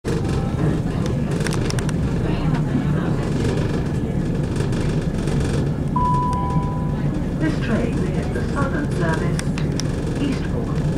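Inside a class 171 Turbostar diesel multiple unit running at speed: the steady rumble of the underfloor diesel engine and the wheels on the track. About six seconds in there is a short two-note tone, stepping down in pitch, and voices can be heard near the end.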